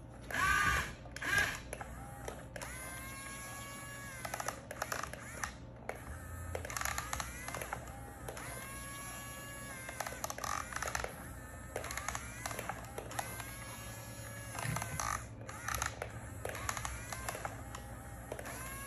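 Electric motors of a Yigong radio-controlled toy excavator whining in repeated spurts of a second or so as the arm and cab are worked, each whine rising, holding a steady pitch, then dropping away. Scattered clicks between the spurts.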